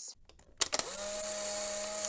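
Instant-camera sound effect: a sharp shutter click about half a second in, then a steady motor whirr like a Polaroid print being ejected.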